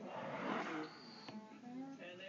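Wooden humidor drawer sliding shut, a rubbing scrape with a short high squeak near the end, stopped by a sharp knock a little over a second in.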